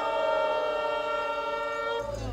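Trumpet holding one long, steady note.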